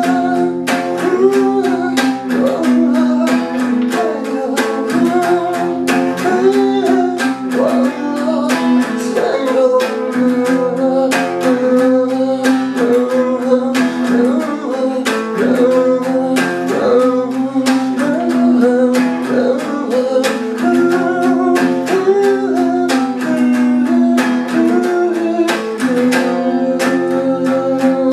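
Guitar strummed in a steady rhythm through an instrumental passage of a semi-acoustic rock song, with a melody line that bends up and down in pitch above the chords.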